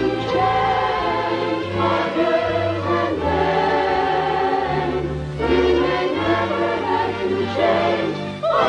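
Orchestral film score with a choir singing held chords over deep sustained bass notes, the chords changing every second or two.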